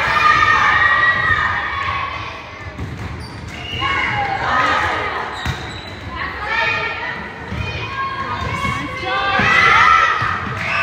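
Volleyball rally in a gym: the ball struck by hand, with girls' voices calling and shouting on and around the court, loudest near the end.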